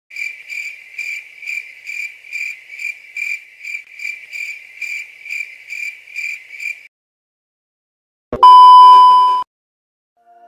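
Rhythmic insect-like chirping, about two high chirps a second, which stops about seven seconds in. After a short silence comes a loud, steady high beep lasting about a second.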